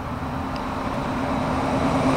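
Steady freeway traffic noise: a continuous rush with a low hum underneath, slowly growing louder.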